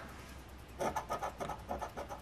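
A round plastic scratcher tool scraping quickly back and forth across a scratch-off lottery ticket, rubbing off the coating over a number spot. A run of short scraping strokes starts about a second in.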